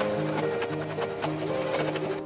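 Electric home sewing machine running, stitching through folded layers of denim with a rapid run of needle strokes, under background music.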